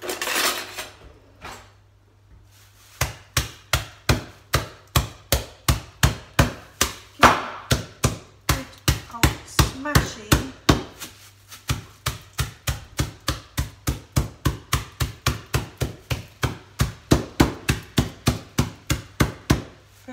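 Wooden mallet pounding garlic bulbs inside a plastic bag on a hard kitchen worktop to crush them: a steady run of sharp blows, about three a second, starting a few seconds in, with a short pause about halfway through.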